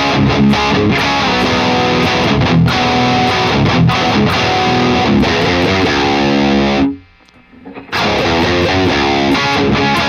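Distorted electric guitar played through Friedman overdrive and boost pedals into a vintage blackface amp head: chunky chord riffing with sharp pick attacks. It stops for about a second some seven seconds in, then starts again.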